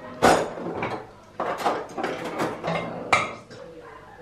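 Dishes and cutlery clinking and clattering as pasta is served onto a plate with metal tongs, with a sharp clink just after the start and another about three seconds in.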